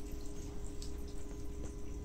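Water trickling and dripping from a garden hose into a shallow basin, over a steady hum.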